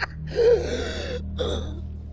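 A wounded man's weak, strained laugh trailing into a long wavering groan-like breath, then a short gasping breath about a second and a half in.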